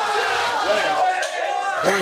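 A small group of people shouting and yelling excitedly over one another, urging on a rider in a sprint finish, with a short shouted 'ja' near the end.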